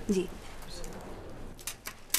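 A woman's short "ji" at the start, then a few light clicks of bangles being handled on their display stand near the end.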